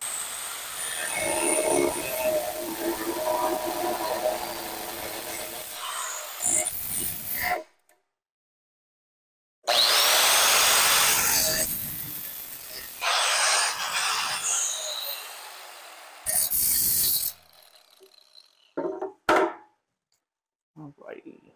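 Electric angle grinder grinding down a metal robot frame piece to open up clearance for a chain. It runs in several bursts of one to a few seconds with breaks between, fading at the end of each run.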